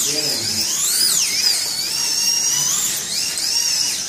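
Slot cars' small electric motors whining at high pitch, rising and falling about once a second as the cars accelerate down the straights and slow into the corners, just after the start of a race.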